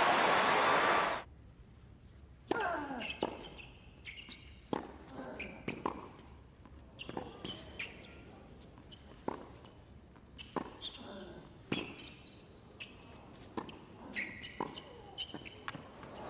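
Crowd applause that cuts off abruptly about a second in, followed by a tennis rally on a hard court: irregularly spaced racquet strikes and ball bounces, with shoes squeaking on the court surface between shots.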